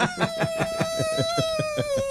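A man imitating a dog choking against a choke collar: one long whining howl that slowly falls in pitch, with a rapid, regular flutter.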